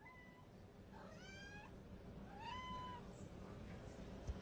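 A domestic cat meowing faintly three times, the second and third meows rising in pitch.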